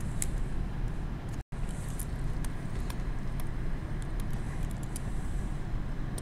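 Steady low background hum, with faint light clicks of a stylus writing on a tablet screen. The sound cuts out completely for a moment about a second and a half in.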